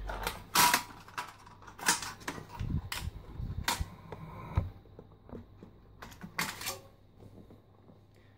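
Sheet-metal RF shield of an Amiga 500 being worked loose and lifted off the system board: a handful of sharp metallic clacks and rattles spread over several seconds, with handling rustle between them.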